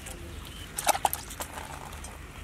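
A raw plucked chicken being handled on a wooden chopping block: a quick cluster of sharp knocks and slaps about a second in, then a few lighter taps.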